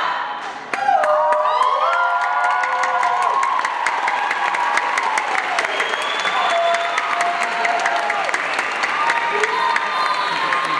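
Audience applause and cheering, with whoops and shouts. It starts about a second in, after a brief lull, and stays loud and dense.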